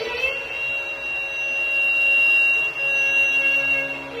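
Carnatic bamboo flute reaches one high note with a short glide and holds it steady for about three and a half seconds, over a soft steady drone.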